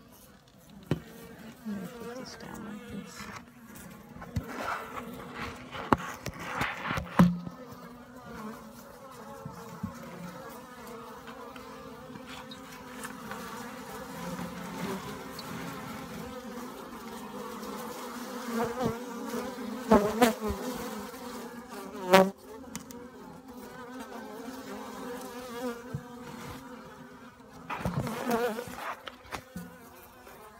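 Honeybees buzzing steadily around an open hive, a constant hum, with a few sharp knocks and bumps scattered through, the loudest about a third of the way in and twice about two-thirds of the way in.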